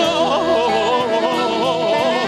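A man singing a song live into a handheld microphone, with a band playing behind him. His voice wavers and winds through ornamented runs over held notes from the instruments.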